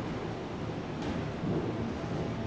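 Handling noise from a handheld camera being moved: a low steady rumble with a faint knock about a second in.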